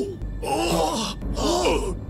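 Men's voices letting out two drawn-out, shocked groans, their pitch bending up and down: anime characters reacting in alarm.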